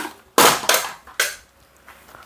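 Plastic-bodied electric finishing sanders clacking and knocking against each other as they are picked up together from a pile: about four sharp clatters, the loudest about half a second in.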